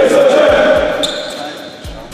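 A basketball team shouting together as it breaks a huddle in a gym, the loud group shout fading over the next second, while basketballs bounce on the hardwood floor. A short high squeak comes about a second in.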